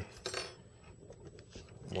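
Light metallic clinks and a brief scrape from handling an ohmmeter test lead and its alligator clip on a wooden workbench, followed by a few faint small clicks.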